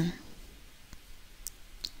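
Three faint computer mouse clicks over quiet room tone.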